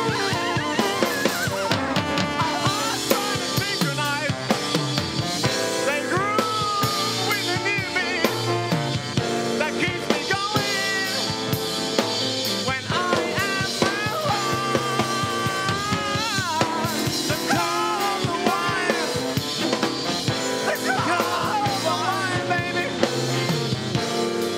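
Live band playing an instrumental passage: a steady drum-kit beat under a lead melody line that slides and wavers in pitch.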